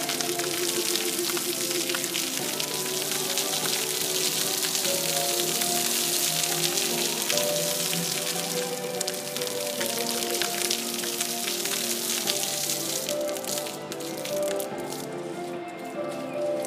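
Music with slow sustained notes playing over the hiss and patter of fountain water jets splashing into a shallow pool. The splashing dies away near the end as the jets shut off, leaving the music.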